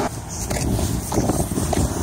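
Road traffic noise: the low rumble of passing motor vehicles, which eases a little right at the start.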